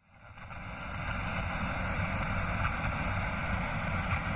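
Steady background noise, strongest in the low range, fading in from silence over about a second; a higher hiss joins about three seconds in.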